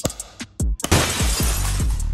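A hard-candy lollipop struck with a knife and shattering: a sudden crash of breaking candy about a second in. Music with a heavy, regular drum beat plays throughout.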